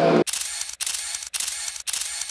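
Camera shutter sound effect: a run of SLR-style shutter clicks in four groups about half a second apart. It replaces the live rock music, which cuts off abruptly about a quarter second in.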